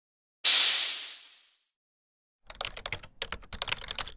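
Sound effects for an animated end graphic: a sudden noisy hit that fades away over about a second, then, from about two and a half seconds in, a rapid run of computer-keyboard typing clicks that goes with on-screen text being typed out letter by letter.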